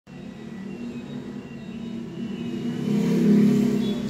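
A motor vehicle's engine running with a steady low hum, growing louder to its peak about three seconds in and then easing off slightly.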